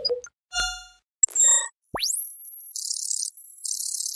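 Electronic sound effects of an animated logo sting: a pitched ding with a short low thump about half a second in, a bell-like chime about a second later, a fast rising sweep at about two seconds, then two bursts of high hiss near the end.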